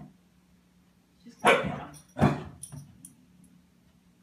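A puppy barks twice, about a second and a half in and again just under a second later.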